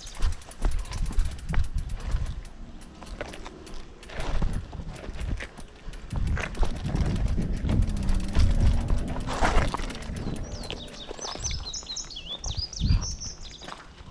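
A mountain bike being walked down a rocky trail: footsteps and the bike knocking and rattling over rock, with a low rumble of handling on the helmet-mounted microphone. Birds chirp near the end.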